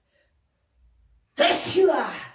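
A woman sneezing once, loudly and suddenly, about one and a half seconds in.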